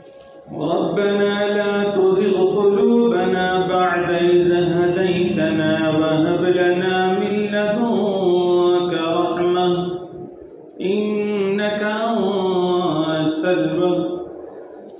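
A solo voice chanting a religious recitation in long, held melodic lines, starting about half a second in, with a brief pause about ten seconds in.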